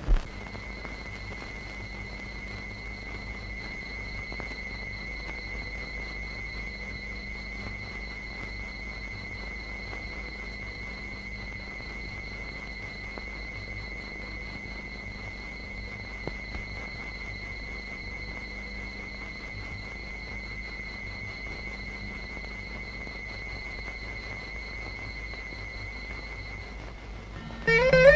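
A steady high-pitched tone, held unbroken and without change in pitch, over a faint low hum and hiss on an old film soundtrack.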